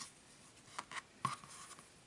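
Faint, short scratchy rubbing of friendship-bracelet threads being handled and pulled through a knot, a few light scrapes at irregular moments.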